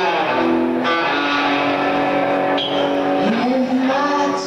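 Live rock band music with electric guitar holding long, sustained notes, and a note sliding up in pitch near the end.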